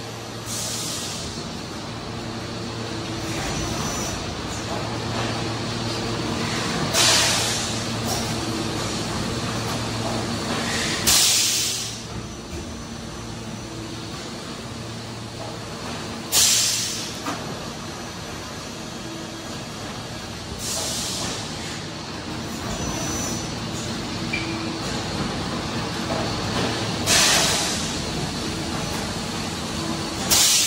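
PET preform injection moulding machine running with its take-out robot: a steady machine hum, broken about every four to six seconds by a short, loud hiss of released compressed air as the machine cycles.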